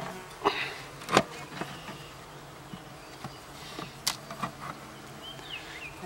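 Honey bees buzzing steadily around an opened top-bar hive, with a few sharp knocks as the wooden top bars are shifted and pried apart, the loudest about a second in.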